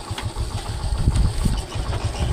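Motorcycle engine idling with a low pulsing note.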